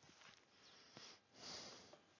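Near silence, with one faint, short intake of breath through the nose about one and a half seconds in.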